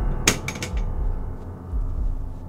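A quick clatter of three or four sharp knocks about a quarter of a second in, over a low, pulsing horror score.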